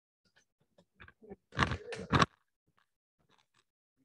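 Handling noise from a meeting-room camera being carried and repositioned: a few small clicks, then a loud crunchy rustle in three quick bursts about halfway through.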